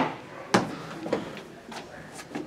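A few sharp knocks and clicks, about half a second apart, the loudest about half a second in.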